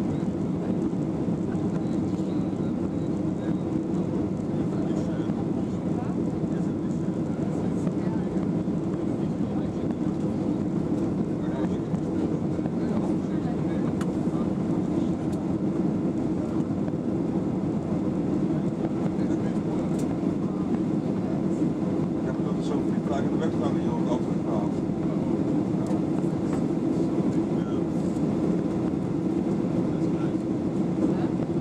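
Steady cabin noise of a Boeing 737-800 climbing out, with its CFM56 engines and the airflow heard from inside the cabin as an even, low-pitched noise.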